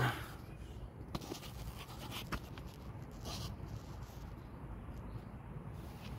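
Faint handling noise as a phone is propped up and positioned under a riding mower: a few light clicks and brief scrapes over a low steady background rumble.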